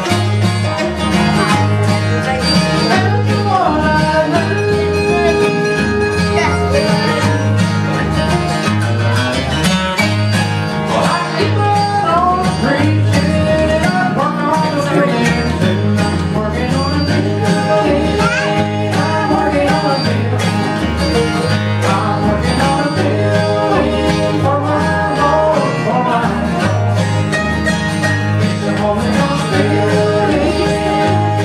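Live bluegrass gospel music played on two acoustic guitars and a mandolin, with a steady, even beat of low notes under the picking.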